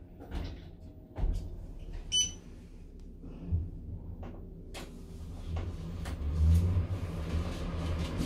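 A hotel passenger lift starting and rising, its drive giving a low rumble that grows louder near the end. A short electronic beep comes from the lift's control panel about two seconds in, along with a few light knocks.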